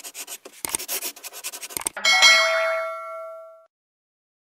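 Animated outro sound effects: rapid, scratchy pen-on-paper writing for about two seconds, then a bright chime that rings out and fades over about a second and a half.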